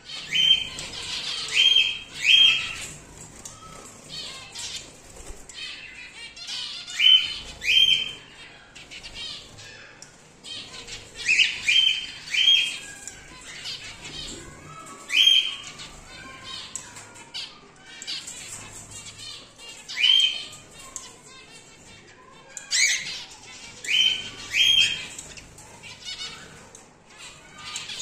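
Cockatiels calling: short, shrill calls, often in twos or threes, repeating every few seconds over fainter continuous chirping.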